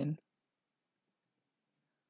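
The end of a spoken word, then near silence: the track drops to a gated room tone with no other sound.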